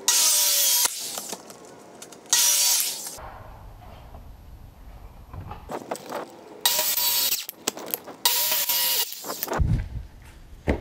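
Corded Ryobi 13-amp circular saw cutting a clear plastic sheet in four short bursts of about a second each, with a steady motor whine under the cutting noise.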